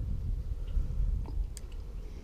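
Low, uneven rumbling noise on a body-worn camera's microphone, with a few faint clicks from a fishing reel being handled just after a cast.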